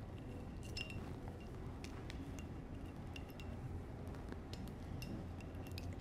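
Faint, scattered clicks and scratches of a wine opener's small foil knife cutting the foil capsule around a wine bottle's neck.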